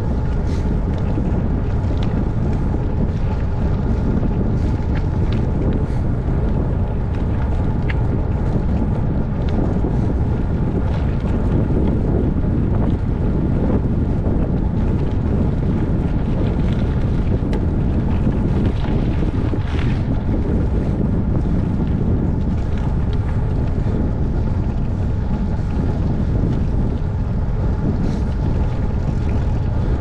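Steady wind rumble on a bicycle-mounted camera's microphone while riding, mixed with the bicycle's tyres rolling over the road and a few light ticks.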